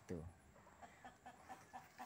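Near silence, broken by a brief falling call just after the start and a few faint, short clucks of chickens.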